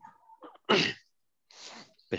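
A person sneezing once: a single sharp burst about three quarters of a second in, followed by a breathy hiss.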